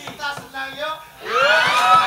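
A voice: a few short voiced sounds, then from about halfway through a rising, drawn-out vocal note that grows louder and holds.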